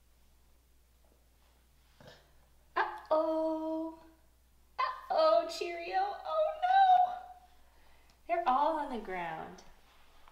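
Wordless vocal play between a toddler and a woman copying his sounds: three drawn-out sung tones, the last sliding down in pitch.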